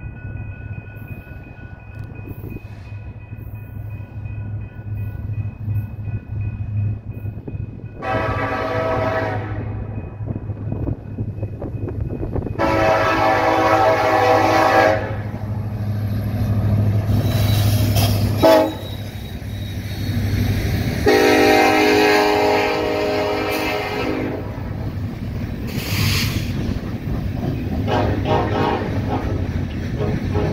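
Diesel locomotives of a coal train running past close by, their engines droning, while the air horn blows the grade-crossing signal: two long blasts, a short one and a long one. Near the end the coal hopper cars roll by with wheel noise.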